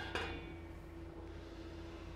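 A single light metallic clink as the stainless steel lid of a Big Berkey water filter is handled and settled in place, followed by a faint steady hum.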